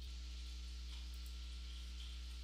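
Steady low electrical hum with a faint hiss: the background noise of the voice-over recording, with nothing else happening.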